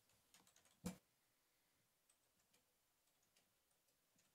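Near silence, with a few faint clicks and one sharper click a little under a second in.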